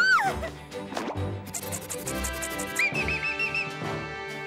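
Cartoon background music with comic sound effects. A whistle-like tone swoops up and back down at the start and is the loudest sound. It is followed by a quick high rattle and then a short warbling whistle near the end.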